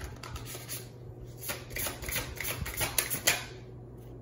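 A deck of tarot cards being shuffled by hand: a quick papery riffle and flutter of card edges that builds about a second and a half in and peaks with a sharp burst near the end.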